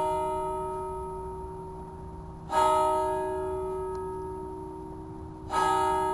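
A bell tolling, struck about every three seconds: two fresh strikes ring out, one about two and a half seconds in and one near the end, while the ring of an earlier strike is still fading. Each strike rings on with many overtones and dies away slowly.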